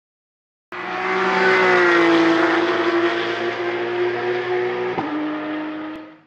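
Race car engine running at high revs with a steady, slightly falling note. It cuts in abruptly just under a second in and fades out at the end, with a short click about five seconds in.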